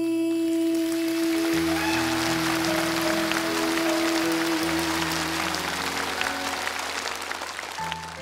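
A female singer holds a long final note over a live band while audience applause breaks out; the held note ends about five seconds in and the band plays on into the song's outro.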